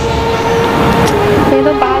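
A motor vehicle passing by on the street: a rush of noise that swells and fades over about a second and a half.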